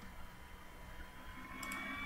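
Faint background hiss and hum of the recording, with a few faint steady tones and no distinct event.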